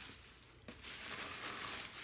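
Plastic shopping bag rustling and crinkling as a hand rummages in it and pulls an item out. It starts with a small click about two-thirds of a second in, after a brief quiet moment.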